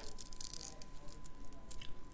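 Faint scattered clicks and light rattling of gemstone bead strands being handled and taken from a display stand.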